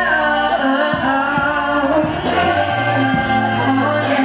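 Live music with singing: a sung melody over low accompaniment notes and a regular beat.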